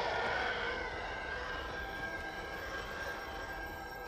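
Film trailer soundtrack: a sustained chord of steady held tones, slowly fading, under a faint background hiss.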